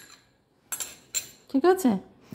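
Several light clinks of small kitchen bowls and utensils knocking against each other, bunched around the middle, after a quiet moment.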